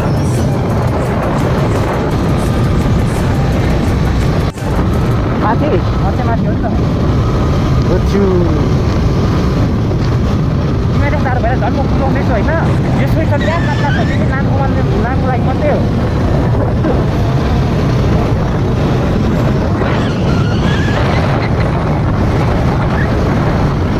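Steady rush of riding wind on the microphone over a KTM 250 motorcycle's engine running as it rides along the road.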